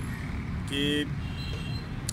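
Steady low outdoor rumble, with a man's single short spoken word about a second in.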